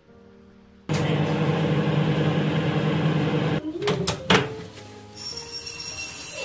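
Iris Ohyama microwave oven running with a steady hum that starts suddenly about a second in and cuts off about three and a half seconds in. A few sharp clicks and a knock follow as it stops and the door is opened.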